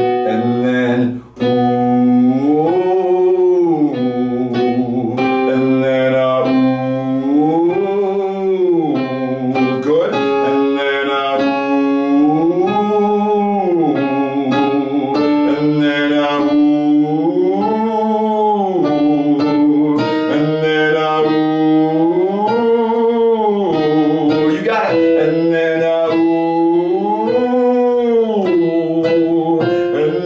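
Male voice singing an 'ooh' vocal slide up a fifth and back down, repeated about every five seconds and moving higher as it goes, over piano notes held between the slides.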